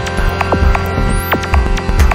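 Experimental improvised music: a dense steady drone of held tones over a deep bass that pulses on and off irregularly, with scattered sharp clicks.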